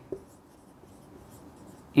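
Marker pen writing on a whiteboard: a string of faint, short strokes as a word is written out, with a small tap as the tip meets the board just after the start.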